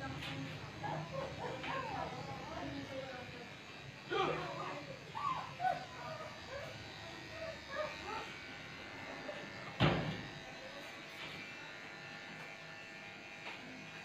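Small corded electric pet clipper buzzing steadily as it trims a dog's fur, with one sharp knock just before ten seconds in.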